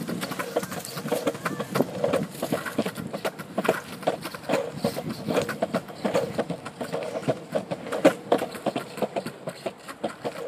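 Longboard wheels rolling over a concrete path: a steady rolling rumble with frequent, irregular clacks.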